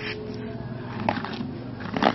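A small wooden box being handled by hand, with short knocks of wood about a second in and two sharper knocks near the end.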